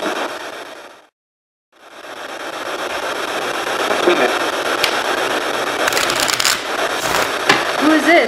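Heavy, steady hiss of an amplified audio recording. It fades out to dead silence about a second in, then fades back in. A few sharp clicks and crackles come in the second half.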